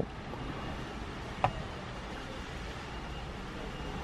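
Steady low rumble of a car cabin's background, with one short click about one and a half seconds in.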